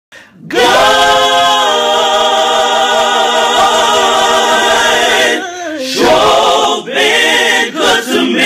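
An a cappella gospel quartet singing, opening with one long held chord that shifts once, for about five seconds, then moving into shorter sung phrases.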